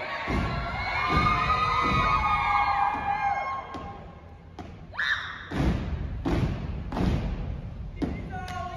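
Step team stomping in unison on a stage: a few heavy thuds under crowd shouting and cheering early on, then a run of about four strong, evenly spaced stomps in the second half, with a couple of sharper hits between.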